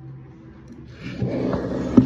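Rustling and scraping of the phone being handled and jostled, starting about a second in and growing louder, with a sharp knock right at the end.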